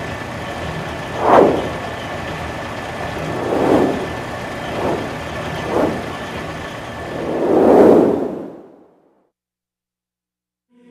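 Whoosh sound effects for an animated title: a steady rushing noise with five swelling whooshes, the last one longer and broader, fading out about a second before the end.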